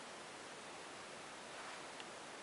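Faint, steady hiss of room tone and recording noise, with no distinct sound standing out.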